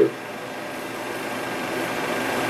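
Steady vehicle engine hum, slowly growing louder, with a hiss over it from the old film soundtrack.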